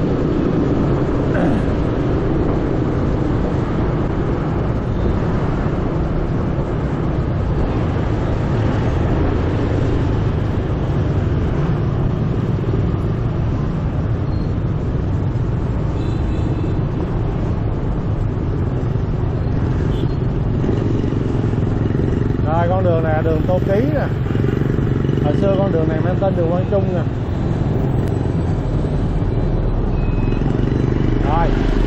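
Riding a motor scooter in dense city motorbike traffic: a steady low rumble of engine and road noise, with other motorbikes and cars passing. Near the end a voice is heard briefly twice.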